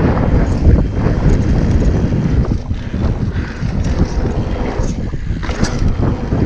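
Wind buffeting the microphone of a camera riding on a mountain bike at speed on a dirt trail, a loud rough rumble with the tyres rolling over packed dirt and small knocks from the bike over bumps.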